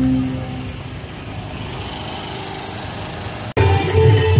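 Music fades out in the first half second, leaving a steady small engine running. About three and a half seconds in, the sound cuts off abruptly and music starts again.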